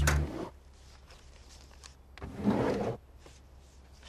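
A short rustling scrape about two seconds in, lasting under a second, as a folder is taken up from a desk.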